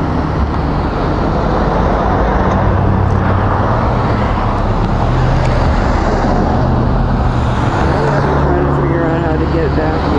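Street traffic noise, with a pickup truck's engine running close by from about two seconds in.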